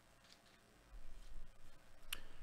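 Faint room tone, then from about a second in, soft handling noise as wrapped trading-card packs of 2021 Donruss Baseball are handled and set down.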